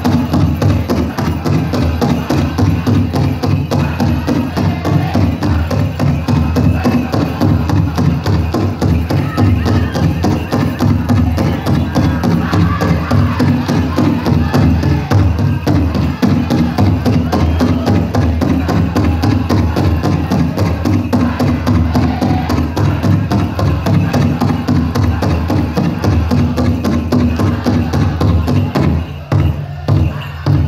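Powwow drum group singing a fast fancy dance song over a large shared powwow drum beaten in a rapid, steady rhythm. About a second before the end the song breaks off, leaving a few spaced drumbeats.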